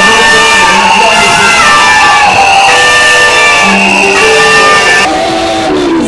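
Loud music with sustained notes that shift in pitch in steps, over a crowd shouting and cheering.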